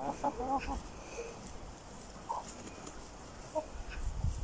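Domestic hens clucking as they forage: a quick run of short clucks in the first second, then a few single clucks spaced out over the next seconds.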